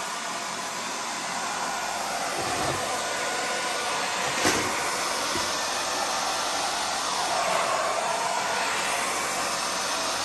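Hair dryer running steadily, blowing wet acrylic pouring paint out from the middle of the canvas, with a faint knock about halfway through.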